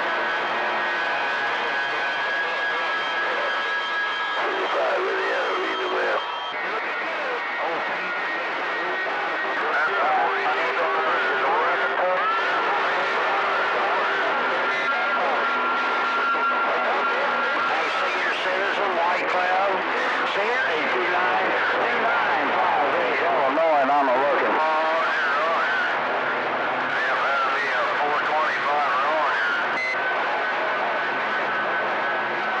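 CB radio receiver on channel 28 (27.285 MHz) picking up long-distance skip: distant voices, garbled and unintelligible in a steady hiss of static, with steady whistling tones that come and go over them.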